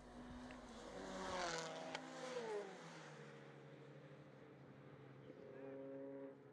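Mazda MX-5 race car driving past along the straight, its engine note rising as it approaches, loudest about a second and a half in, then falling in pitch as it goes by. A fainter, steady engine note follows near the end.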